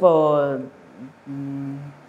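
A man's voice only: a word trailing off with falling pitch, then a short gap and a held, level hum of hesitation lasting about half a second.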